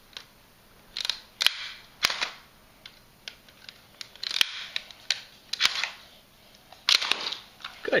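Hard plastic clicks and snaps from the Hot Wheels T-Rex Takedown dinosaur's head mechanism being worked by hand, a handful of sharp clicks spread out, some in quick pairs.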